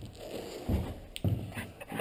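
Soft low thumps, one about two-thirds of a second in and another about a second and a quarter in, with a sharp click between them, over faint background noise.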